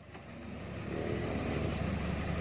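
A motor vehicle engine running steadily at idle, a low even hum that fades in over the first second.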